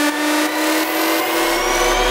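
Hardstyle synth riser: one held synth note gliding slowly upward in pitch, with higher sweeps climbing above it. A deep bass swell comes in near the end as the build-up peaks.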